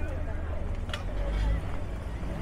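Voices of people talking close by, the words not made out, over a steady low rumble, with a short tick about a second in.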